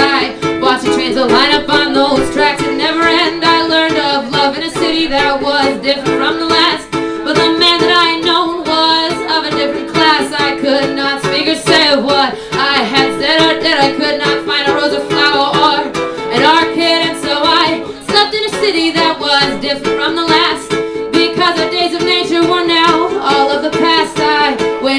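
A ukulele strummed steadily while a woman sings over it.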